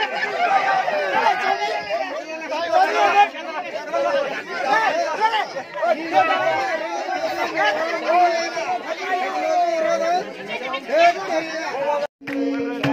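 Loud crowd chatter: many people talking and calling out at once, their voices overlapping into a steady babble.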